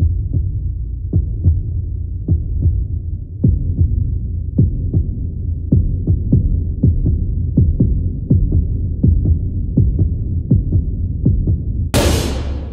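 Suspense sound design: a loud, low rumbling drone with heartbeat-like low thuds that come faster and faster, from about one every half second or more to two or three a second. Right at the end a sudden sharp crash cuts in.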